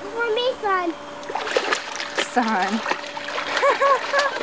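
Water splashing in a swimming pool for about a second, starting just over a second in, amid children's high-pitched wordless calls.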